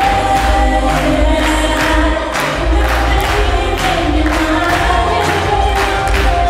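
Brazilian zouk dance music with a steady beat and long, held sung notes.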